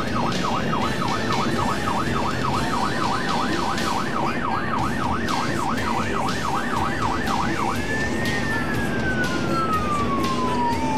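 Electronic emergency siren of a responding vehicle, heard from inside the cab: a fast yelp sweeping up and down about three times a second, switching about eight seconds in to a slow wail that rises and then falls. Steady road and tyre noise on wet pavement runs underneath.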